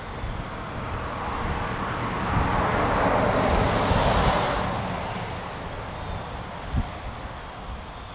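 A vehicle passing by, its noise swelling to a peak three to four seconds in and then fading away, over a low rumble of wind on the microphone. A single knock near the end.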